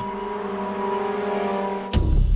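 A car engine running at a steady speed as a steady hum, slowly getting a little louder, then cut off abruptly near the end.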